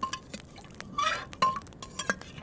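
A spoon stirring in a small metal pot, scraping and clinking against its sides: a few sharp clinks, each ringing briefly, among lighter scrapes.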